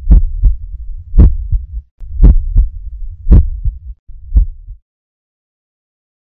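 Heartbeat sound effect: five slow lub-dub beats about a second apart, each a heavy low thud followed by a softer one. The beating stops abruptly just before five seconds in.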